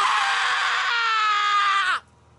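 One long, high-pitched human scream whose pitch sags slowly before it cuts off abruptly at the end.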